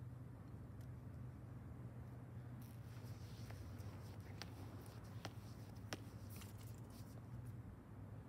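Faint sounds of a hammer throw on a concrete pad: a couple of short scrapes and four sharp clicks that come a little quicker each time as the thrower speeds through his turns, over a low steady hum.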